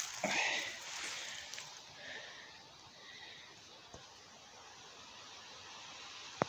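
A brief rustle of grass and handling in the first second, as a mushroom is set down on a pile in the grass, then a faint, steady outdoor background.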